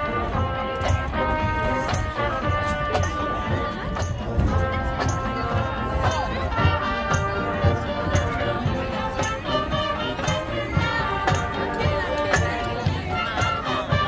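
Marching band playing a piece: held horn chords over a steady drum beat with percussion hits. Spectators chatter close by.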